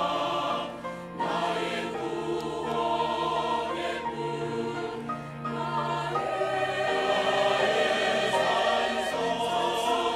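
Mixed church choir of men's and women's voices singing a Korean-language anthem in parts, over organ accompaniment with long held bass notes.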